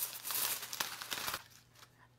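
Aluminium foil crinkling as it is peeled back off a baking dish, stopping about one and a half seconds in.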